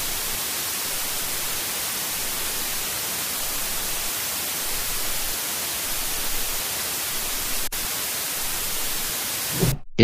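Steady hiss of static or white noise at an even level, with a faint click about three-quarters of the way through; it cuts off suddenly just before the end.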